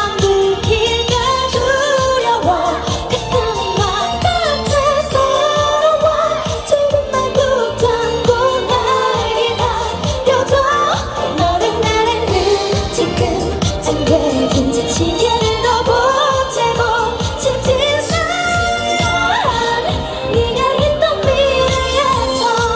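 A female singer singing an upbeat K-pop song into a handheld microphone over its backing track, with a steady beat.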